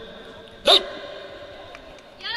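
A single short, sharp shout about two-thirds of a second in, its pitch rising: the leader's spoken command for the team to bow to the audience.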